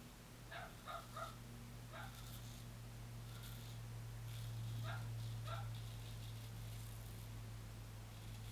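Steel straight razor scraping through lathered stubble in short strokes: a few quick rasps about half a second in, another near two seconds, and more around five seconds, over a low steady hum.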